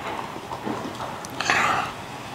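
Eating and drinking at a table: small mouth clicks, then a short breathy burst about one and a half seconds in.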